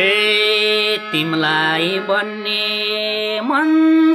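Nepali lok dohori singing: long held sung notes that slide up into each phrase, over a steady drone.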